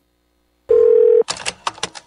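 A short telephone tone lasting about half a second, starting about two-thirds of a second in, followed by a quick run of sharp clicks as an answering machine picks up the line.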